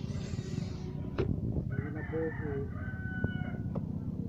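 A rooster crowing once in the background, a call of nearly two seconds starting about halfway through, over a few sharp knocks of a machete blade chopping into a coconut palm trunk.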